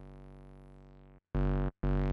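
Eurorack modular synth playing a low sawtooth tone from an Erica Synths Black Wavetable VCO. A held note fades slowly and cuts off just over a second in, then the same pitch sounds again in two short, gated notes as the envelope is triggered.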